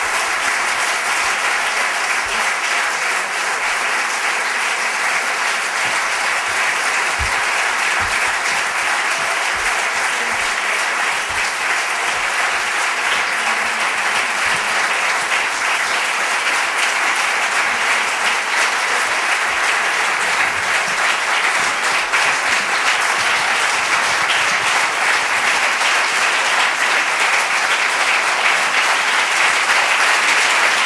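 Audience applauding steadily, a little louder near the end.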